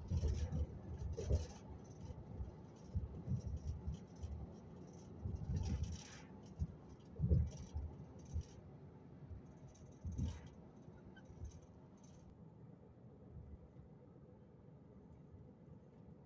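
Handling noise on a phone microphone: irregular thumps with rubbing and rustling as the phone is moved about, stopping about twelve seconds in.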